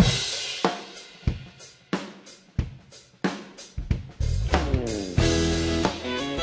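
A country band starting a song live: a drum kit plays a steady beat with a hit about every two-thirds of a second, and bass and other pitched instruments join from about four seconds in.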